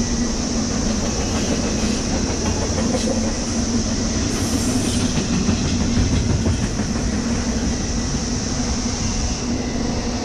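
Double-stack intermodal freight cars rolling over a railroad bridge: a steady rumble of steel wheels on rail with rhythmic clickety-clack.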